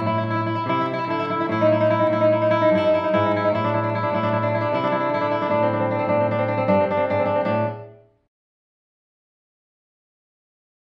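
Classical guitar by luthier Galabert playing a fast two-string trill with bass notes underneath, plucked with the fingernails in a rotating i-a-m right-hand fingering. The passage stops about eight seconds in.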